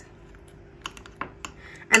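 Fork tines clicking against a glass dish while mashing overripe bananas: a few light, separate clicks in the second half.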